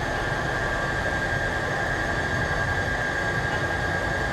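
Dual-motor electric skateboard running at full throttle with its wheels spinning a dyno roller: a steady whir of wheels on the drum with a constant high motor whine. The pitch holds level because the board has reached its top speed and the drum speed has stopped rising.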